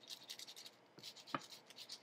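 A peeled garlic clove rubbed over the crisp surface of toasted bread: faint, quick scraping strokes for about the first second, then a single light tap.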